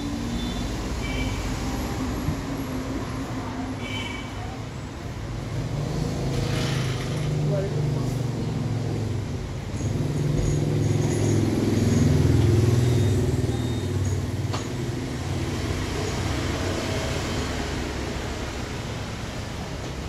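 Road traffic passing, a vehicle engine's rumble swelling and fading, loudest a little past the middle, over indistinct background voices.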